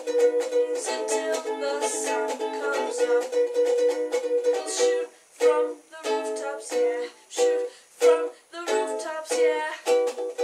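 Ukulele strummed by hand, with no voice: a steady run of chords, and from about halfway in, short separate chord strokes with brief silences between them.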